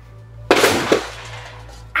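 A sudden loud crack-like impact about half a second in, fading over about a second: a hit sound effect, just before a cry of pain. Low background music runs under it.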